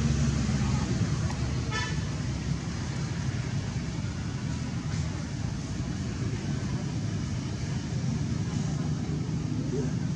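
Steady low rumble of an engine running, with a short high-pitched call about two seconds in.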